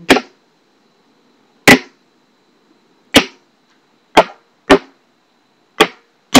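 A plastic bleach jug beaten with a stick as a drum, six sharp strikes at uneven gaps that come closer together in the second half. This is the percussion accompaniment of a baguala.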